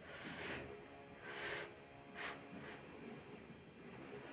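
A child blowing on a hot spoonful of rice to cool it: two soft puffs of breath of about half a second each, then a shorter one.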